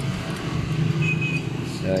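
A steady low engine-like hum, with a brief high tone about a second in; a man's voice starts near the end.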